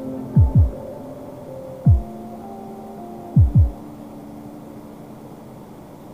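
Soundtrack sound design: deep, falling bass thumps in heartbeat-like double beats (a pair, a single, then another pair) over a steady low synth drone that slowly fades.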